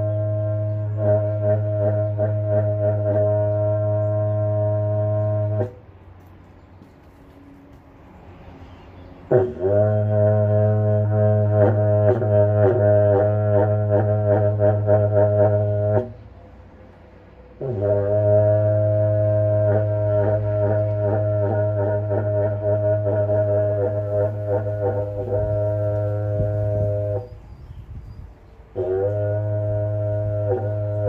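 A berrante, the Brazilian cattle-calling horn made of joined ox-horn sections, blown in long, low, buzzing blasts of several seconds each, played by a self-confessed novice practising. Four blasts are heard: one already sounding at the start, two more after short pauses, each beginning with a quick upward slide in pitch, and a fourth starting near the end.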